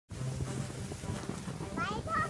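A toddler's high-pitched squeal, rising and falling, near the end, over a steady hiss of boots and a cardboard box being dragged through fresh powdery snow.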